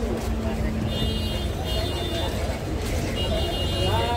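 Street traffic rumble with voices in the background. A high, thin tone sounds twice, each time for about a second.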